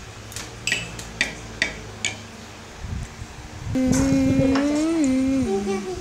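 A metal spoon clinks against a ceramic mug about five times while stirring a drink. Then, a little past halfway, a person hums a long note that rises and then falls, and this is the loudest sound.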